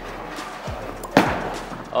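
Bowling ball released onto the wooden lane, landing with a thud about a second in, then rolling with a steady low rumble toward the pins.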